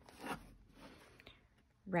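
Faint rustling and scraping of a fabric-covered handmade journal being handled against a wooden tabletop, with a soft swell of rustle near the start, then a brief spoken word at the very end.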